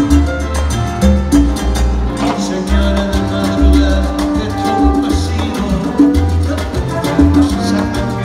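Live salsa band playing, with trumpets and trombones over piano, congas and a pulsing bass line.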